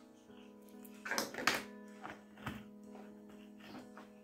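Quiet background music with steady held notes. A few light knocks and taps come through it, a cluster about a second in and single ones later, as a plastic scoop is set down and a cap is pushed onto a test tube.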